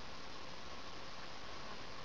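Steady, even hiss with a faint thin tone running through it; no distinct sounds stand out.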